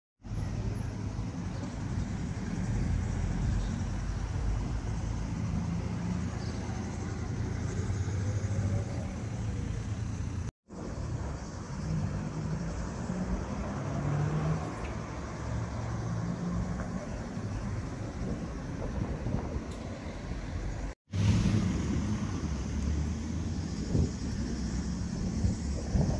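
Outdoor street ambience: a steady low rumble of road traffic and car engines. The sound drops out abruptly for an instant twice, about ten and twenty-one seconds in.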